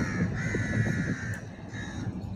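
A bird calling: one long call, then a short one near the end, over a steady low rumble of wind and surf.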